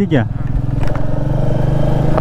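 Motorcycle engine running at low, steady revs, its rapid even firing pulses holding one pitch as the bike rolls slowly.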